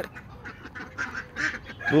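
A flock of domestic ducks and a goose calling, with a few short calls about a second and a second and a half in.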